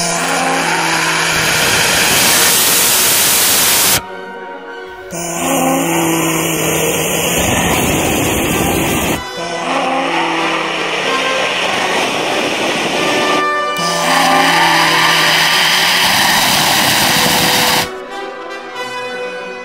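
Small hybrid rocket motor firing on a test stand with a loud, steady rushing noise that breaks off sharply a few times. The owner attributes the interrupted burn to low chamber pressure, because the pressure regulator would not go above 10 bar. Background music plays underneath.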